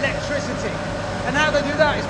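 Steady machine hum of a hydroelectric turbine and generator running, heard under a man talking.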